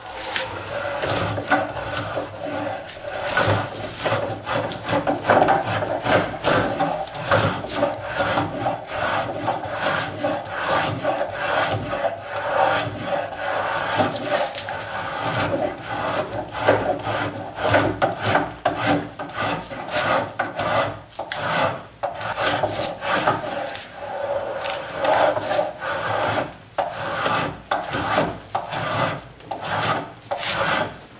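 Spokeshave cutting along a beech table leg in repeated quick strokes, a dry rasping sound of the blade shaving the wood.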